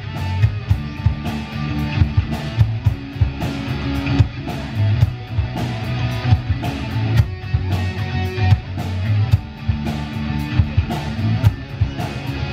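Live rock band playing: electric guitar over a drum kit, with a sustained low bass line.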